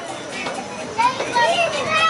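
Young children's high voices calling out and chattering, louder from about a second in.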